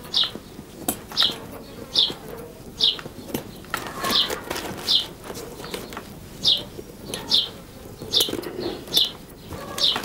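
A small bird chirping over and over, short falling chirps about once a second. Beneath them come soft rustling and faint clicks from a knife trimming loose straws off the handles of a woven berceo-fibre basket.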